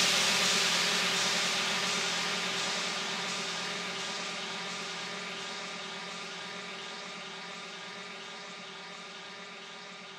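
Breakdown in a tech house mix: the drums have dropped out, leaving a held synth drone of several steady tones under a hissing noise wash, which fades away slowly and evenly.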